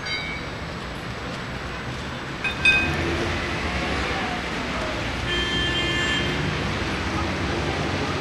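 A tram running with a steady low rumble. Two short ringing strikes, like the tram's warning bell, come at the very start and again about two and a half seconds in, the second the loudest. A steadier high-pitched ringing tone follows about five to six seconds in.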